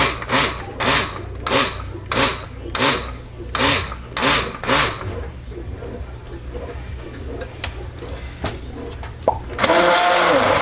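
Immersion (stick) blender running in a tub of cold-process soap batter, its motor humming steadily. For the first five seconds the churning surges about every 0.7 seconds, then it runs more evenly, and a louder whirring burst comes near the end.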